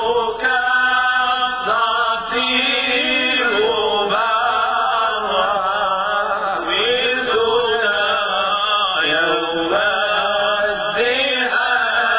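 Male voices chanting together through microphones: an Islamic devotional praise song (madih, inshad) sung without instruments, in long held notes that waver and glide with melismatic ornament.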